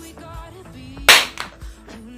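A single sharp hand clap about a second in, over quiet background music.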